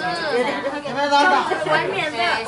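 Chatter: several voices talking at once.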